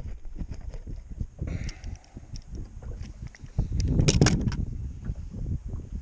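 Wind rumbling on the microphone, with scattered rustles and small knocks from handling, and a louder rustling burst about four seconds in.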